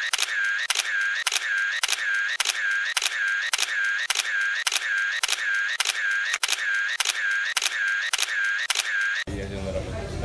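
A camera-shutter click sound effect repeating evenly, a little over twice a second, then cutting off suddenly about nine seconds in. After the cut comes the noise of a busy café room with voices.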